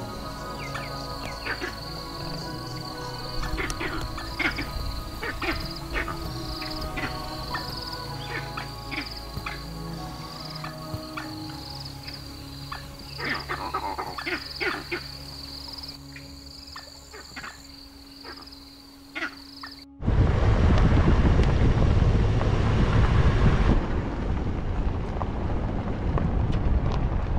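Background music with sustained tones and repeated plucked-sounding notes. About twenty seconds in it cuts off suddenly to loud wind noise on the microphone from a moving vehicle on a dirt road.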